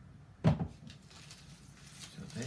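A single knock of cardboard on cardboard about half a second in, as the iMac's box is handled during unboxing.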